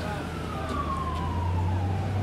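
City street ambience: a steady low traffic rumble with a distant siren, its single tone gliding slowly down in pitch.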